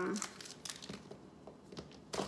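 Plastic wrappers of small Snickers candy bars crinkling as they are torn open by hand, in light, scattered crackles.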